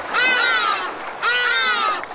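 Two drawn-out animal cries, each lasting under a second and falling slightly in pitch, with a short gap between them.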